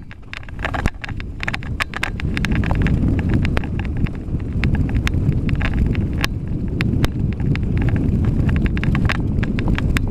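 Mountain bike riding fast down a rough dirt trail, heard from a camera on the bike. A steady rumble of tyres on dirt and wind runs under frequent sharp clicks and rattles from the bike jolting over bumps. It grows louder over the first few seconds.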